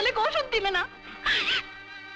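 A woman's weeping, impassioned voice, breaking off about a second in with a short breathy sob.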